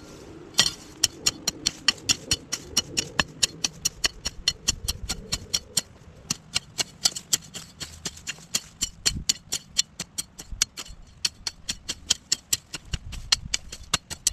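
Hand hoe blade striking and scraping garden soil in quick, even strokes, about four sharp chops a second, as weeds are scooped out by the roots.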